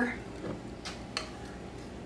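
Two light clicks about a third of a second apart, a little under a second in, as a measuring cup is picked up, over quiet room tone.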